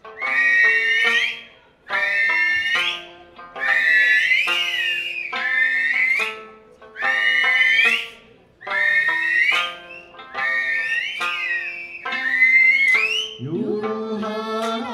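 Eisa music: piercing finger-whistles (yubibue) glide up and down in about eight repeated phrases over sanshin plucking a slow tune. Singing comes in near the end.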